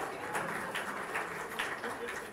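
Faint murmuring from a seated audience in a lecture hall, a few soft sounds over steady room noise.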